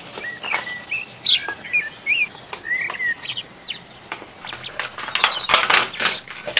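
Thin plastic packaging crinkling and rustling as it is handled, loudest in the last second or so. Small birds chirp in the background through the first half.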